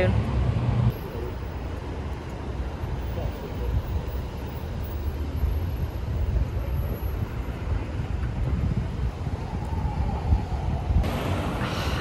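Street ambience: a steady rumble of traffic with wind buffeting the microphone.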